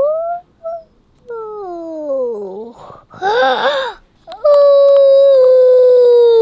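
Toddler whining and crying in upset protest: a falling whine, a short wavering sob, then a long, very loud high-pitched wail from a little past halfway.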